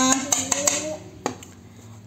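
A woman's drawn-out hesitant "uh", then a single light knock of a plastic spatula against the bowl of rice flour she is mixing.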